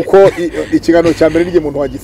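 Speech only: a man talking steadily into a lapel microphone.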